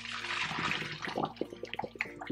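Cooking water from a pot of boiled orzo poured through a fine-mesh strainer into a stainless steel sink, a steady rush of pouring and splashing water that is strongest for the first second and then thins to a lighter patter as the pour ends.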